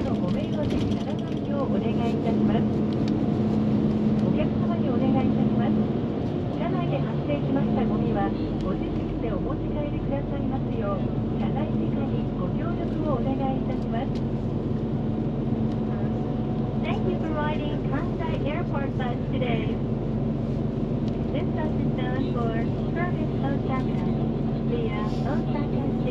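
Inside a moving airport limousine bus: steady engine drone and road noise, with a deeper rumble coming in about seven seconds in. Voices talk underneath.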